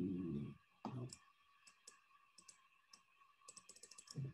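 Faint computer mouse clicks, a few scattered ones and then a quick run of them near the end, after a short wordless hum of a voice in the first second.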